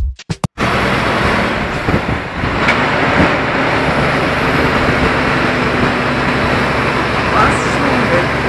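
Mini car driving up a long mountain grade: steady engine hum and road noise, starting just after a burst of electronic music cuts off about half a second in.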